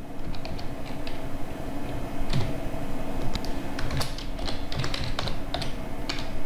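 Computer keyboard typing: an irregular run of quick keystroke clicks as a line of text is typed.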